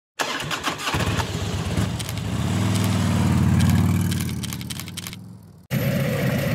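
Motorcycle engine running, swelling in loudness to a peak a little past the middle, then fading away and cutting off suddenly just before the end.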